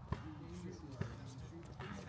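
A basketball bouncing on an outdoor hard court: two bounces about a second apart, with players' voices in the background.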